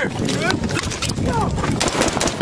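Combat audio: a few gunshots, the sharpest near the end, with men shouting over a steady low rumble.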